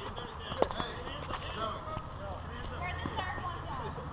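Faint distant voices of people calling out, with scattered footsteps on pavement, a sharp click about half a second in, and a low steady hum underneath.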